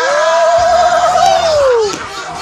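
A man's long, wordless, drawn-out cry: the pitch rises, holds with a wavering tremble, then falls away near the end.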